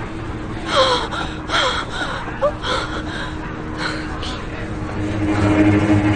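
Film soundtrack: short, scattered gasps and cries from frightened people over a low steady hum that grows louder near the end.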